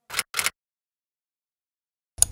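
Two brief bursts of noise in the first half second, then dead silence.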